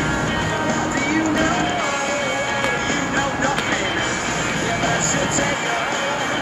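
Music from an outdoor concert carrying over from about a block away, with a wavering melody line over a continuous backing.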